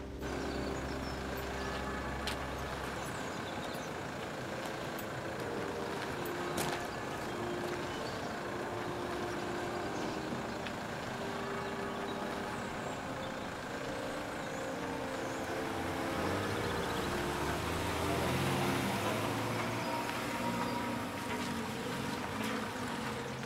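Soft background music of slow, sustained notes over steady road-traffic noise, with a low engine rumble at the start and again in the last few seconds.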